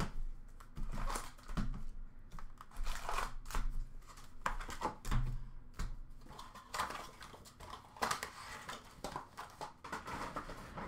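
Hands opening a cardboard box of Upper Deck hockey cards and taking out its foil packs: irregular crinkling of the foil wrappers and rustling cardboard, with short clicks as packs are set down on a glass counter.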